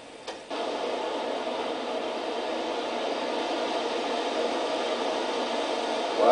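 Steady hiss-like noise on an old camcorder tape's soundtrack, heard played back through a TV speaker, cutting in with a click about half a second in.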